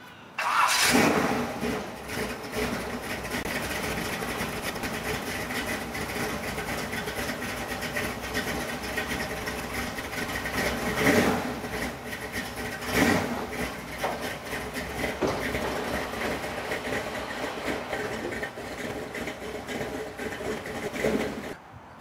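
A vintage Chevrolet Camaro Z28's V8 engine cranks and starts about half a second in, then settles into a steady idle. It rises briefly twice, at about 11 and 13 s, as the throttle is blipped.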